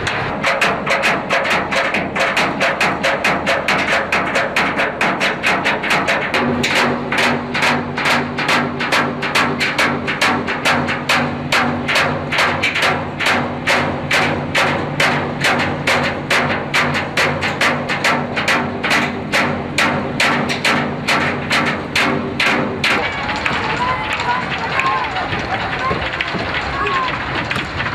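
Fast, even knocking at about two to three strikes a second, with a low steady hum joining about six seconds in. Both stop about three seconds before the end.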